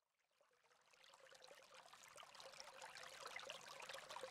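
Near silence: faint outdoor background noise with a light crackle fades in from about a second in and grows slowly louder.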